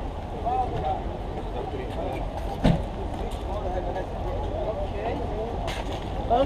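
Street ambience: a steady rumble of road traffic with people's voices in the background, and a single sharp knock about two and a half seconds in.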